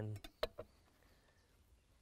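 Two sharp taps on a wooden cutting board about half a second in, as savoy cabbage is handled on it, then faint background.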